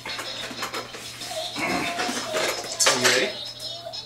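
Plastic toy push walker being handled, its loose shape blocks clattering and knocking in the bin. Two brief voice sounds come through, one just before two seconds in and one, louder, at about three seconds.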